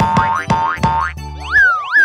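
Cartoon sound effects: three quick rising zips in the first second, then two springy up-and-down boings about a second and a half and two seconds in, as boxes pop out, over background music.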